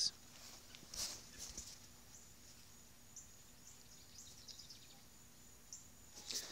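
Faint outdoor ambience: a steady high insect drone with short high chirps scattered through, and a brief rustle of handled leaves about a second in.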